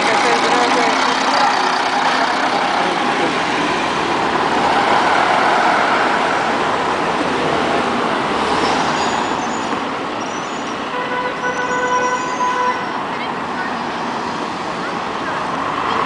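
A diesel city bus running close by, over the steady noise of street traffic. About eleven seconds in, a steady horn note sounds for a couple of seconds.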